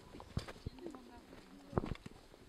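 Faint voices with a few scattered sharp clicks and knocks.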